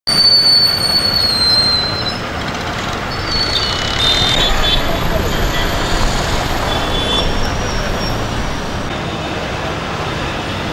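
Steady traffic noise with indistinct voices, a continuous rumble and hiss with a few faint high tones in the first half.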